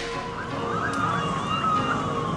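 Distant emergency-vehicle siren wailing, its pitch rising slowly and then sliding back down, over a low steady city rumble.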